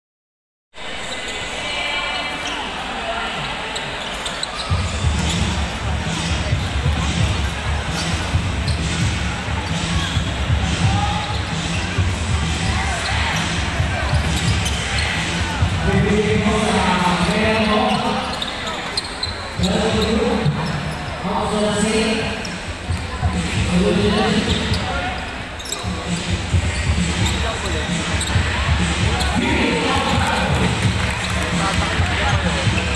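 Live courtside sound of a basketball game in a large, echoing gymnasium: the ball being dribbled on the hardwood court amid steady crowd noise. Voices call out several times in the second half.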